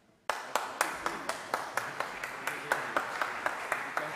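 Audience applause that breaks out suddenly about a quarter second in, with individual sharp hand claps standing out above the spread of clapping.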